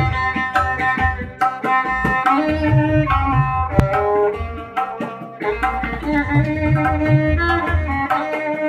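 Violin playing a Mishra Bhairavi dhun, held notes joined by slides, accompanied by tabla keeping time with crisp treble-drum strokes and deep bass-drum strokes.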